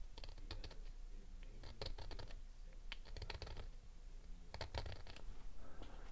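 Fingers working a small circuit-board stack in a thin metal tray: four short bursts of quick clicking and scraping.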